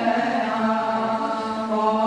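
Greek Orthodox Byzantine chant: voices singing a slow, drawn-out melody over a steady held low note.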